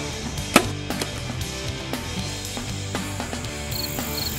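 Background music with a steady beat. About half a second in there is a single sharp snap of a compound bow being shot.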